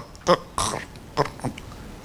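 A man's voice into a handheld microphone making about four short gurgling, grunting noises, mimicking a hungry stomach rumbling.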